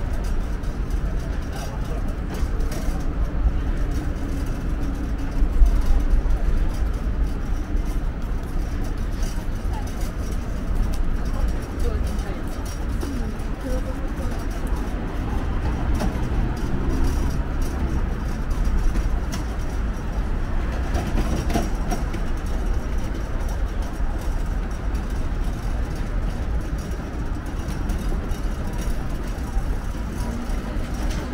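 City street ambience: a steady low traffic rumble with faint voices in the background.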